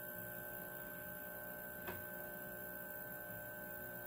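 Magnum Energy inverter, switched on and inverting, giving a steady electrical hum with a high tone running over it. One faint click about two seconds in.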